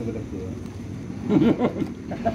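A man's voice, brief and indistinct, loudest a little past the middle, over a steady low hum.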